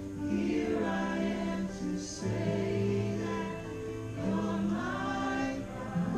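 Live worship music: voices singing long held notes over sustained low bass and chord notes, with no drums playing.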